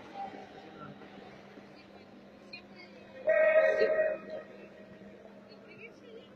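Competition buzzer sounding once for just under a second, about three seconds in, one flat steady tone over a faint hum and low hall murmur. It is the time signal that stops a judo bout after a hold-down.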